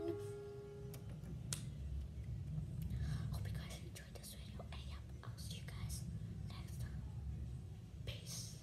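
A person whispering quietly close to the microphone, over a steady low hum. A held musical note fades out in the first second, and there is one click about a second and a half in.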